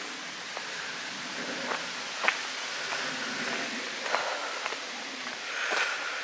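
A few faint footsteps on a dirt track over a steady hiss of outdoor background noise.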